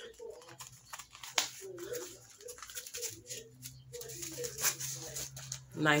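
A few light clicks and rustles as a small flap wallet is handled and opened, over a faint voice and a low steady hum.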